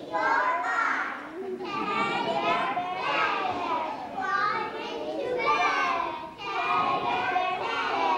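A group of preschool children singing a song together in unison, in short phrases with brief breaks between them.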